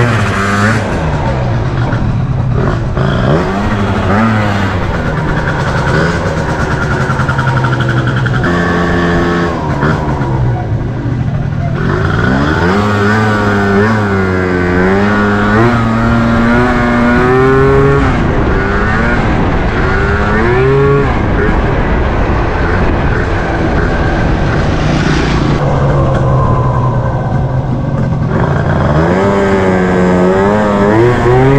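Honda Dio scooter engine under way, its revs repeatedly rising and falling as it accelerates and eases off through the CVT. The rider afterwards says the CVT is slipping.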